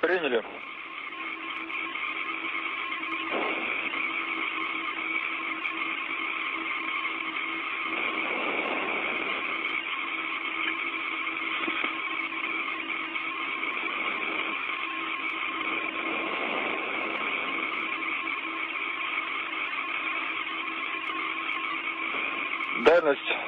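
Steady hiss of an open space-to-ground radio link, with a steady hum running through it and cut off at the top like a radio channel.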